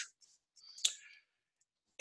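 A single short, sharp click about a second in, from the presenter's computer as the slide is advanced.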